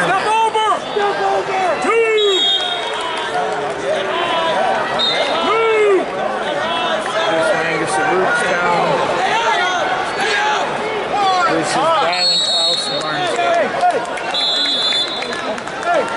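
Arena crowd noise: many spectators and coaches shouting and calling over one another. Short referee whistle blasts come from the mats several times, one about twelve seconds in as the period clock runs out.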